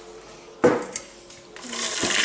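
A single sharp knock a little after half a second in, then a rising rustle near the end, as kitchenware and walnut pieces in a plastic food-processor bowl are handled.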